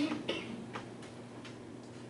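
A few faint, sharp clicks over a steady low room hum, in the first second.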